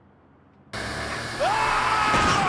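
A sudden rush of hissing noise starts under a second in, and about halfway through a man's long, steady scream joins it.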